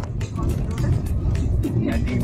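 Cabin noise of a car driving over a rough, unfinished gravel road: a heavy low rumble from the tyres and suspension with frequent sharp knocks and rattles as the car jolts over the broken surface.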